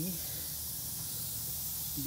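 Steady high hiss over a low hum, even throughout, with no distinct event.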